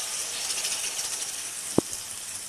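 Hot ghee with cumin seeds sizzling and crackling in a kadhai as spiced curd is poured into it, the sizzle easing slightly as the curd covers the pan. There is a single light click near the end.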